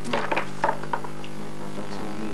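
A quick run of light clicks and knocks from small hard game pieces being picked up and set down, bunched into about the first second, over a steady low hum.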